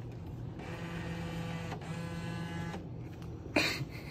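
Vending machine bill acceptor whirring as its motor draws in a paper bill, running for about two seconds with a brief break partway through. A short, louder noise follows near the end.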